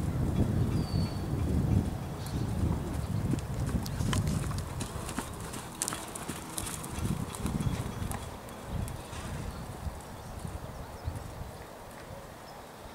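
A horse's hoofbeats, muffled on sand arena footing, as it canters. The hoofbeats grow fainter as the horse moves away.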